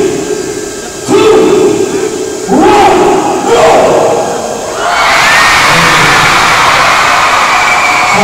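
A run of loud, drawn-out shouted calls, each about a second long, then from about five seconds in a large crowd breaks into sustained cheering and screaming.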